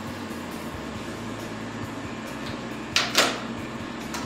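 Two sharp plastic clicks close together about three seconds in, from a small drill bit case being handled, over a steady low hum.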